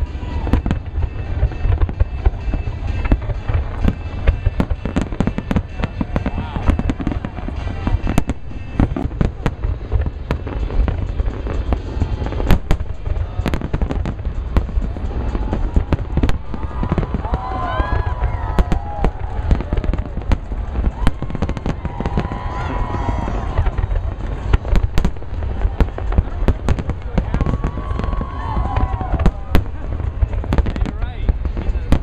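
A large aerial fireworks display: a dense, unbroken string of shell bursts, bangs and crackles over a continuous deep rumble.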